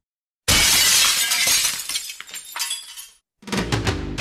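A sudden loud crash like shattering glass about half a second in, fading out over about two and a half seconds. Near the end, after a brief gap, outro music with plucked notes begins.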